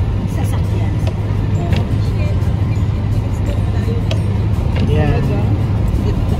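Steady low drone of road and engine noise inside a moving car's cabin at highway speed.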